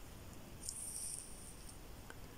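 Beading thread, a braided FireLine, drawn through a bead with a needle: a faint, high-pitched hiss lasting about a second, starting about half a second in.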